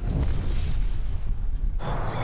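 An explosion sound effect accompanying a fist bump: a loud, low, rumbling noise that dies away after nearly two seconds.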